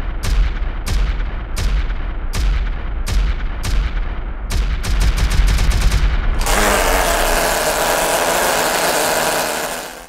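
Slowed-down combustion of a small see-through Wankel rotary engine: evenly spaced deep bangs about two a second over a low rumble, coming quicker about four and a half seconds in. About six and a half seconds in they give way to a steady rushing noise that fades out just before the end.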